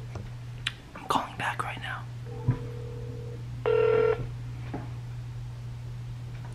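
Telephone call-progress tones through a phone: a steady single-pitch beep of about a second, then a shorter, louder buzzy tone at the same pitch, over a low steady hum, with brief faint murmurs in the first two seconds.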